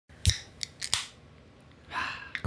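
A beer can cracked open with a strong crack. There is one sharp crack about a quarter second in, a few smaller clicks, and then a short hiss of escaping gas just before the one-second mark.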